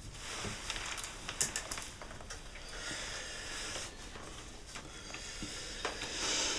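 Low-level room sound: soft breathy rustling with a few small clicks, and a longer hiss of breath or cloth near the middle.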